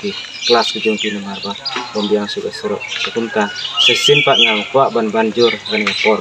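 A man speaking steadily, with a bird chirping in the background; about four seconds in the bird gives three quick, high chirps in a row.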